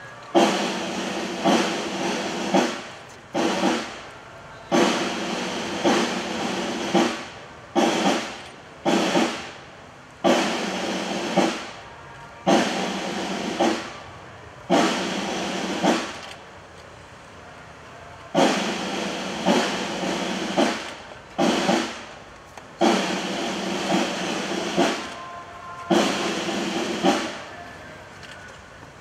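Military drums, likely snare drums, beating a ceremonial cadence of rolls. The rolls come in long and short runs, each starting sharply and cutting off abruptly, with short gaps between.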